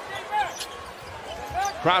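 Basketball shoes squeaking on the hardwood court in quick, short chirps as players cut and jostle for position, over a steady arena crowd murmur.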